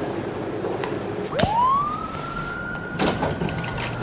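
A swing door opening: a sharp click about a second and a half in, then a squealing hinge that rises quickly in pitch and holds one steady note for over two seconds, with a couple of knocks near the end.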